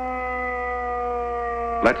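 Civil defense air-raid siren sounding a steady held tone with several overtones, falling slowly in pitch.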